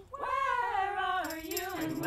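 Solo singing voice in a gospel choir. After a brief break in the choir's sound, one voice swoops up and then slides slowly down through a held phrase.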